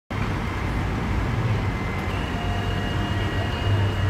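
Steady low engine hum of a tilt-tray tow truck idling with its tray lowered, over city street traffic.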